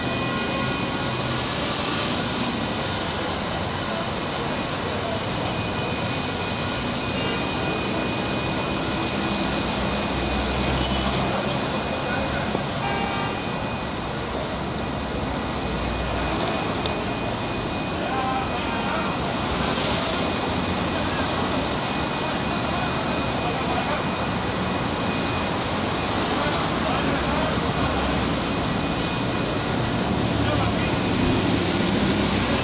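Steady urban din of road traffic mixed with a crowd's indistinct chatter, with no clear words.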